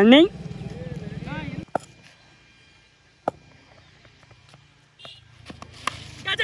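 Players' voices calling across the ground, then a quiet stretch broken by two sharp knocks, and near the end the crack of a bat striking the ball.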